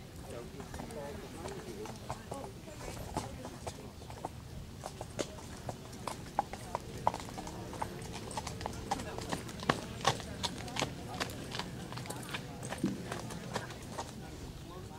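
Quarter Horse's hoofbeats on the arena's dirt footing as it is led at a walk and jog: an uneven run of sharp clicks that grows denser and louder from about five seconds in.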